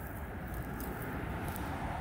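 Steady outdoor background noise: a low rumble with a faint hiss and no distinct event.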